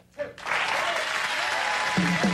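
Studio audience applauding, breaking in about half a second in and holding steady.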